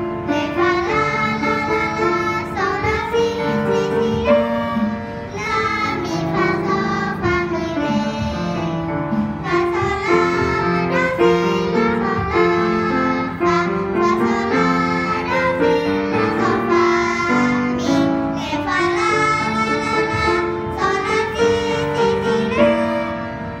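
Three young girls singing a song together, accompanied by a grand piano.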